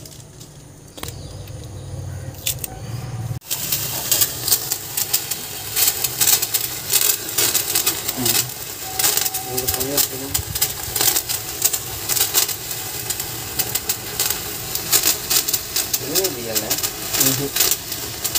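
A Diwali firework spinner (chakri) igniting and throwing sparks: a dense, steady fizzing crackle that starts suddenly about three and a half seconds in and carries on.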